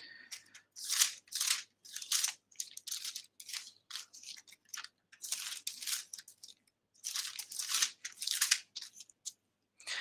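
Pages of a Bible being leafed through while searching for a passage: a string of short, irregular papery rustles and flicks, with brief pauses between runs.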